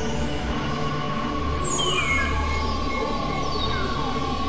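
Dense layered experimental electronic sound: a steady low drone with a long held tone entering about half a second in, and several falling pitch sweeps over a noisy bed.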